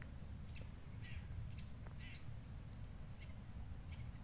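Outdoor ambience by still water: a steady low rumble with five or six short, high bird chirps scattered through it.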